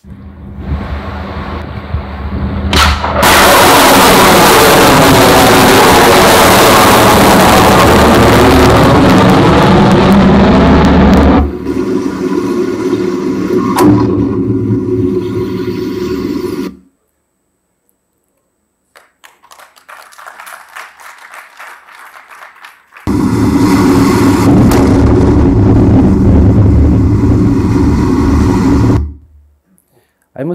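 Soundtrack of BrahMos cruise-missile test footage: a long, loud roar from the missile launch lasting about eight seconds, then a quieter rumble with a knock. After a short silence comes another loud passage.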